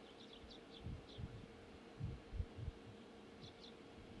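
Small birds chirping in short high calls, a few in quick succession near the start and again near the end, over irregular low rumbles and a faint steady hum.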